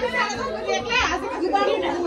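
Indistinct chatter of several people talking over one another.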